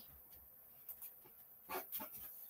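Near silence: quiet room tone, with a couple of faint clicks about a second in and a brief faint sound near the end.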